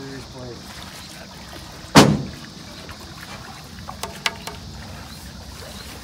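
A single loud thump about two seconds in, followed by a few faint clicks about two seconds later, under faint voices.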